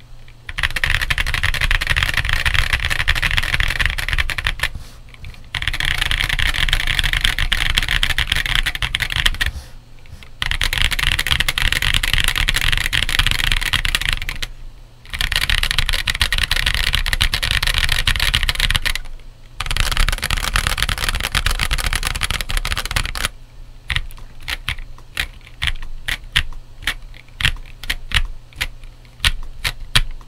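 Monsgeek M1 aluminum gasket-mount keyboard, stock, with Gazzew U4T 65g tactile switches and PBT MA-profile keycaps, being typed on fast in runs of about five seconds with short breaks. In the last several seconds the typing turns into slower, separate keystrokes.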